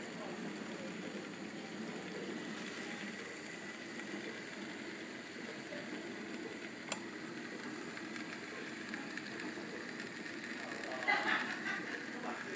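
Steady low rushing noise of a soda-can alcohol stove burning under a pot of simmering water. A single sharp click comes about seven seconds in, and a brief voice sounds near the end.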